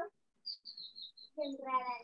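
A bird chirping: a quick run of about seven short, high chirps, followed near the end by a drawn-out voice.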